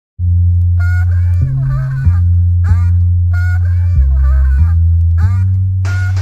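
Boom-bap hip hop instrumental intro that starts abruptly just after the beginning: a heavy bass line stepping between notes under a looped phrase of sliding higher tones, repeating about every two and a half seconds.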